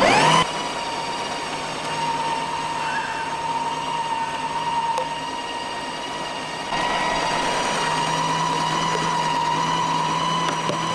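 Kenwood electric meat grinder switching on and spinning up in a fraction of a second, then running steadily with a motor whine while it grinds meat; a little louder from about seven seconds in.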